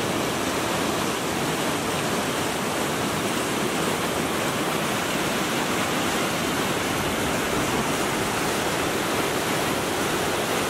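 River rapids rushing over rocks, a loud steady roar of white water with no breaks.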